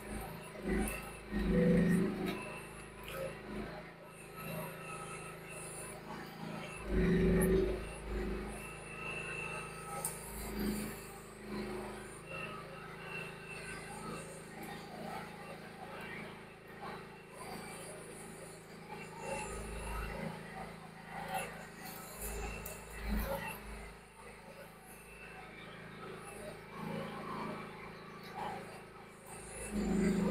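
Mini excavator engine running steadily while the arm is worked, with short louder surges about two and seven seconds in.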